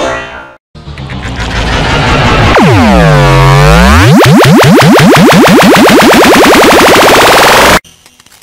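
A voice clip saying 'I asked a question first', digitally processed until it is no longer recognizable as words: loud, distorted and smeared. After a brief silence under a second in, its pitch swoops down and back up in the middle, then runs in a string of rising sweeps before cutting off abruptly just before the end.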